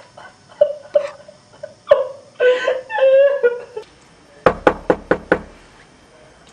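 A woman sobbing and wailing in short broken bursts, then, about four and a half seconds in, five quick knocks on a wooden front door.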